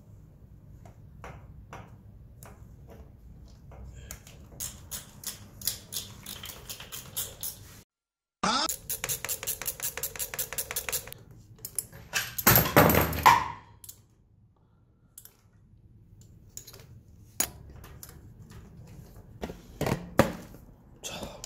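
Hand-tool and parts-handling noise while a new carburetor is fitted and connected to a motorcycle engine: two runs of quick, even clicking, split by a brief silent gap, then a louder clattering rustle a little past halfway and a few scattered clicks.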